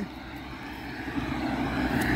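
A car approaching fast along the road, its engine and tyre noise growing steadily louder as it nears.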